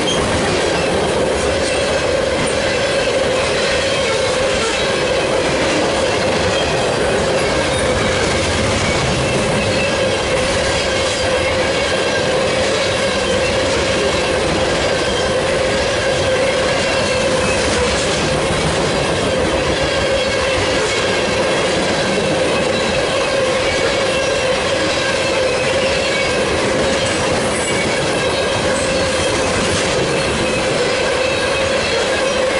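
Freight train's hopper and gondola cars rolling steadily past: a continuous rumble and clatter of steel wheels on rail, with a steady high tone held throughout.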